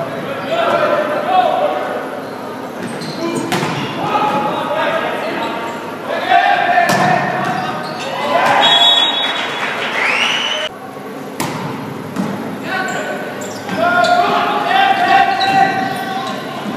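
Volleyball rally in a gymnasium: several sharp smacks of the ball being hit, mixed with players' shouted calls and spectators' voices, all echoing in the hall.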